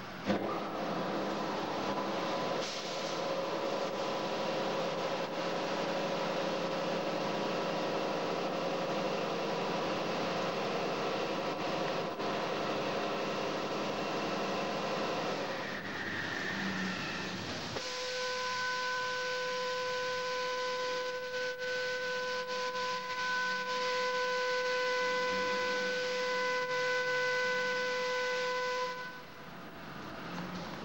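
Mark VII Aquajet GT-98 rollover car wash machinery running: first a steady rushing noise, then about eighteen seconds in a steady high whine with several tones starts and holds until it cuts off shortly before the end.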